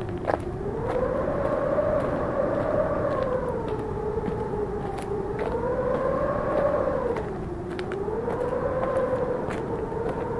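Howling wind sound effect: a hollow moaning tone that slowly rises and falls every few seconds over a steady rush of air, with faint scattered clicks.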